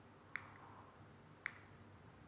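Near silence, broken by two faint short clicks about a second apart.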